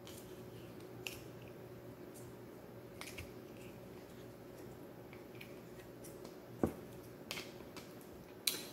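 Faint plastic clicks and taps of a small Play-Doh tub being handled and opened, with one louder short knock a little past two-thirds of the way through. A steady low hum runs underneath.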